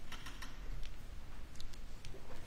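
Plastic water bottle being handled and drunk from, giving a few sharp crinkling clicks, most of them in the first half-second, with a couple more later.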